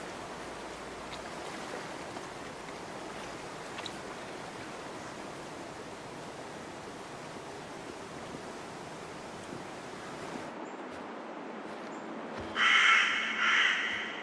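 Steady rush of stream water, which drops away about ten and a half seconds in. Near the end a crow-family bird gives a couple of loud, harsh caws.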